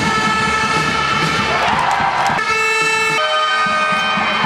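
Sustained horn-like notes ring out in a basketball arena, holding steady and then changing pitch in steps twice near the end, over crowd noise and the chirps of sneakers squeaking on the court.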